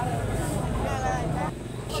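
Men's voices talking in an outdoor crowd over a steady low rumble, with a brief lull near the end.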